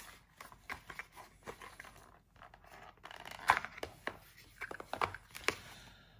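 Cardboard packaging and paper inserts being handled: rustling with scattered short taps and scrapes as a small white box is opened, the loudest about three and a half seconds in.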